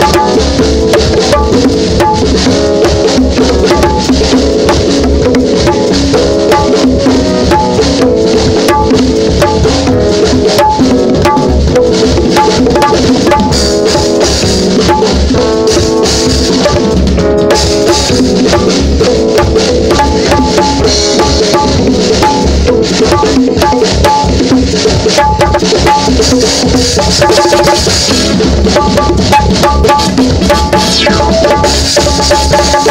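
LP City bongos played by hand in a steady, busy rhythm close to the microphone, over a live band's music with drum kit and pitched instruments that plays without a break.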